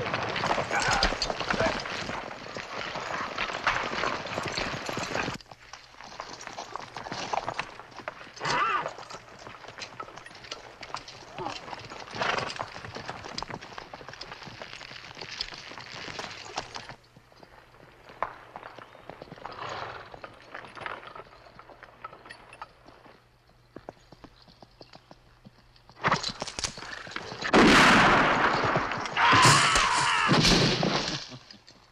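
A group of horses ridden over forest ground: hoofbeats and movement, loud for the first five seconds, then quieter with scattered thuds. Near the end comes a loud, sudden outburst of noise.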